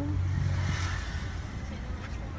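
Steady low engine hum, heard from inside a parked van. A brief rustle of the camera being moved comes about half a second in.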